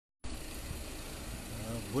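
Steady low rumble of a vehicle engine idling, with a man's voice starting near the end.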